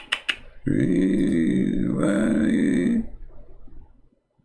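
A long, low, rough vocal sound lasting about two seconds, beginning under a second in, after a few quick clicks.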